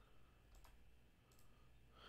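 Near silence with a few faint computer-mouse clicks, two of them close together about half a second in.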